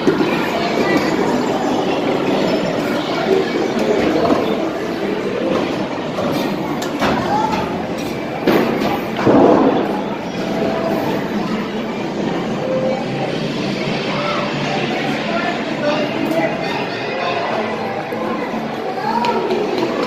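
Busy indoor arcade hubbub: many overlapping voices of children and adults, with music playing and a few knocks and clinks. A slightly louder stretch comes about nine seconds in.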